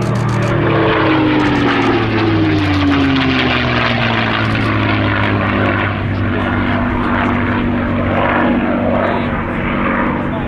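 A P-51D Mustang's Packard Merlin V-12 engine and propeller running loud and steady at display power. Its pitch falls over the first five seconds as the fighter sweeps past, then stays level as it climbs away.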